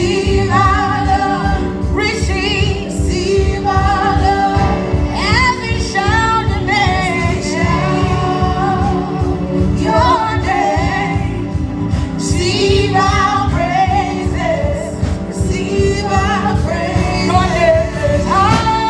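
A church praise team singing a gospel worship song, a woman's lead voice with other singers, over live band accompaniment with keyboard.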